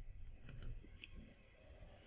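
A few faint, sharp clicks of a computer mouse, about three within the first second, over a quiet room.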